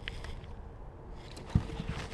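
A bass being landed over the side of a plastic fishing kayak: faint water and handling noises over a low rumble on the microphone, then a single dull thump about one and a half seconds in.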